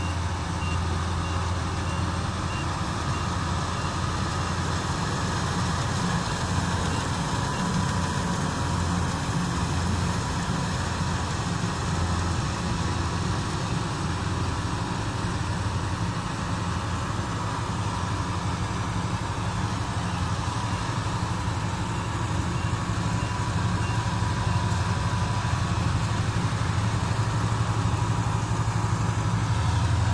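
Kubota rice combine harvester running steadily under load as it cuts through standing rice: a continuous low diesel engine hum with a wash of threshing noise above it, growing slightly louder near the end.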